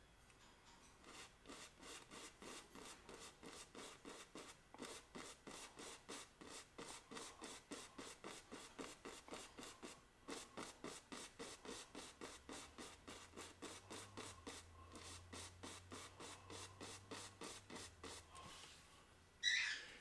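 Oil-paint brush tapping and scratching against a canvas on an easel, faint quick strokes about four to five a second, with a short pause about halfway through; the strokes stop about a second before the end.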